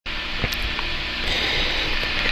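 Steady background hiss, with a couple of faint clicks about half a second in.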